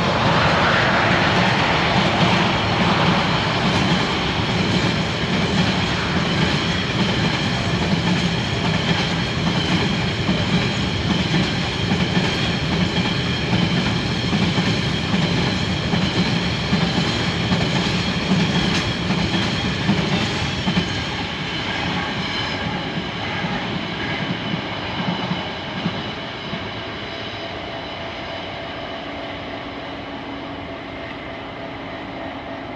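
Narrow-gauge freight train hauling ore wagons, running past with steady wheel-on-rail rumble and clatter that grows fainter in the last third as it draws away.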